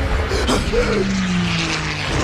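A propeller fighter plane's engine running in an air battle scene, its pitch sliding slowly down in the second half, with a sudden bang about half a second in.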